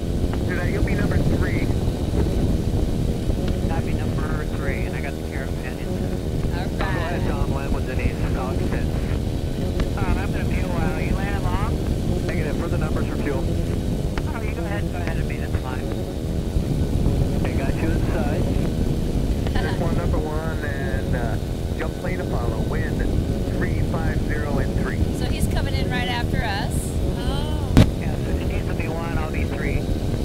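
Engine and pusher propeller of a weight-shift microlight trike running steadily in flight, with indistinct voices over it and a single click near the end.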